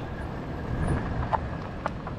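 Even low rumbling noise of the Himiway Zebra fat-tyre e-bike rolling along a dirt path, with a couple of faint clicks in the second half.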